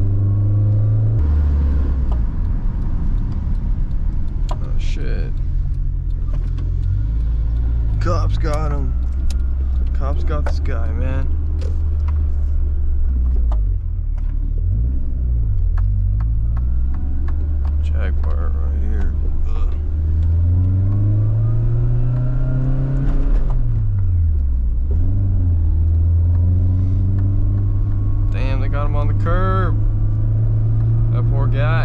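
Nissan 240SX's four-cylinder engine, with an aftermarket exhaust, heard from inside the cabin while driving; its note falls about a second in, dips and recovers around the middle, then climbs steadily about two-thirds of the way through before dropping again as the driver works the throttle and gears.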